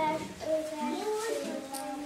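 A child singing a short melody, each note held briefly before stepping to the next.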